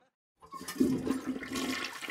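A toilet flushing: rushing water with a steady low hum under it, starting suddenly about half a second in after a moment of silence.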